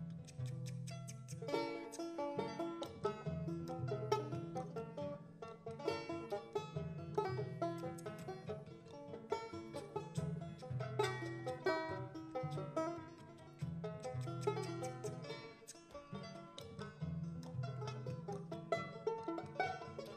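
Live band playing an instrumental passage, with quick plucked string notes over a steady, sustained bass line.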